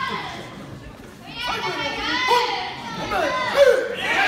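Spectators shouting and calling out, several raised, high-pitched voices overlapping. They are quieter for the first second and grow busier and louder after that.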